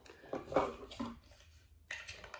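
Soft handling noises from small plastic gear being picked up and fitted together: a few light clicks and rustles.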